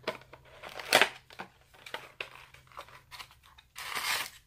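A small cardboard advent-calendar box being opened by hand: a string of short paper-and-card rustles and clicks as the flaps are worked open, loudest about a second in, with another rustle near the end.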